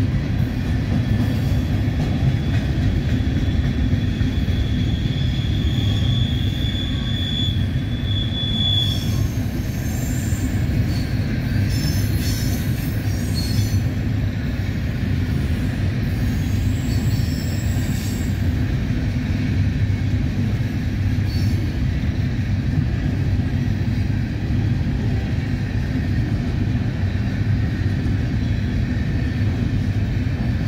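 Coal train's freight cars rolling past: a steady rumble of steel wheels on rail, with a high wheel squeal held for the first several seconds, growing louder, then brief squeals and screeches near the middle.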